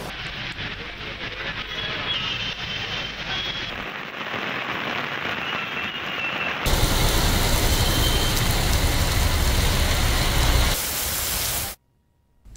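Heavy rain pouring down as a steady hiss of downpour, with street traffic mixed in. The sound shifts abruptly a few times, grows louder with a deep rumble about two thirds of the way through, and cuts off suddenly near the end.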